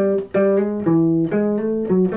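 Hollow-body archtop electric guitar playing a run of single picked notes, one after another, a melodic soloing line with a brief break a third of a second in.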